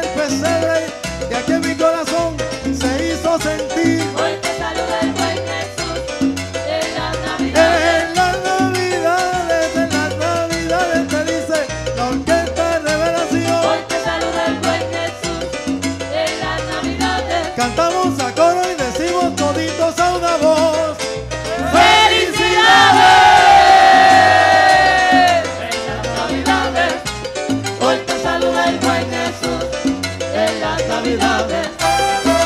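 Live salsa band playing, with congas, a rhythmic bass line and a lead vocal. About three-quarters of the way through comes a louder held chord whose notes slide downward before the groove carries on.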